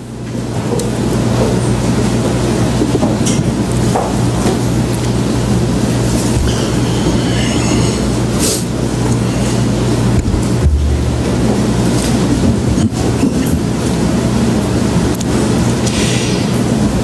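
Bible pages rustling and turning as a congregation opens to a passage, over a steady low hum and rumble of room noise, with scattered small clicks.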